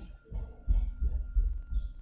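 A stylus dragging across a tablet screen as lines are drawn, picked up as low, uneven rubbing and tapping.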